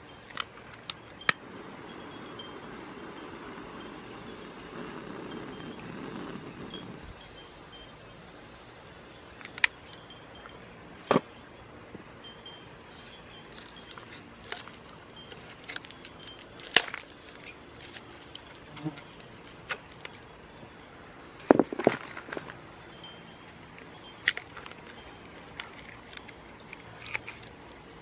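An insect buzzing close by for about the first seven seconds, stopping abruptly. Then a quiet background with scattered sharp clicks and cracks from hands working the rim of a dried mortar-coated flower pot, the loudest a double crack about three quarters of the way through.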